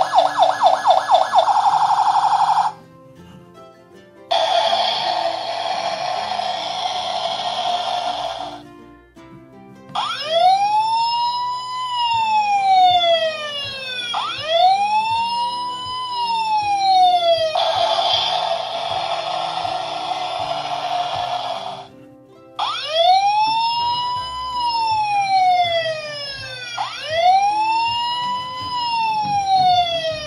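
Electronic fire-engine sound effects from a Tonka Toughest Minis toy's small speaker, set off by its button: a fast pulsing siren at the start, a harsh noisy stretch, then a rising-and-falling wail siren cycling about every two seconds. The noise and the wail come round a second time, with faint background music underneath.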